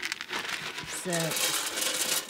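Close crackling and rustling with many small scattered clicks, from lambs feeding on nuts at a metal trough in straw and a plastic bucket being handled.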